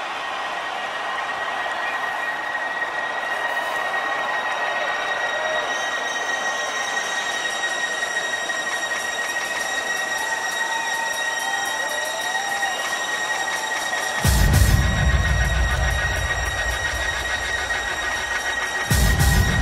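Crowd noise at a live electronic music show under a held high synth tone, with more high tones building above it. About fourteen seconds in, a heavy deep bass sound hits and holds for a few seconds, then stops.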